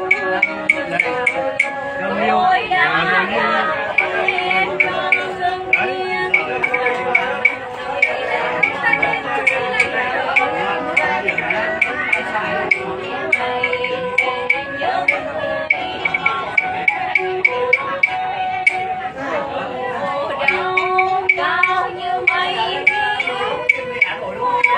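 A woman singing ca Huế, Hue traditional song, in long held, bending notes, accompanied by plucked Vietnamese lutes including a moon lute (đàn nguyệt). A steady ticking beat keeps time throughout.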